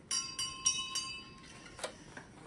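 Bright bell-like chimes: a few struck notes ring out in quick succession and fade over about a second, followed by a short knock near the end.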